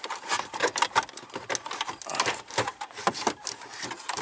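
Irregular plastic clicks, knocks and scraping as a JVC single-DIN car stereo in a plastic dash-kit bezel is pushed and wiggled into the dash opening. The bezel binds in the opening instead of sliding in.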